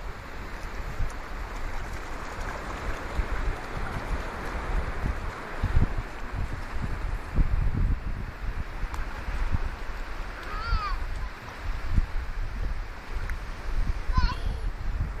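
Wind buffeting the microphone in irregular low gusts over a steady hiss of sea water and surf, with one brief high-pitched cry a little past the middle.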